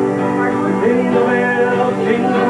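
Live acoustic and electric guitars playing chords, with a man singing, recorded on a home camcorder.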